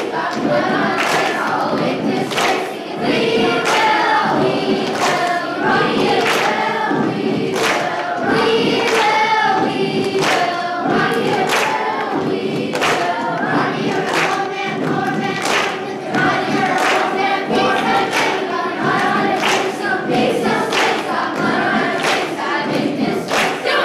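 Large school choir of mixed voices singing, cut across by sharp percussive hits on a steady beat.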